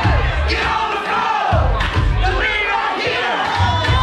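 Dance music with heavy bass played over a DJ's sound system, with a crowd of dancers shouting and singing along over it.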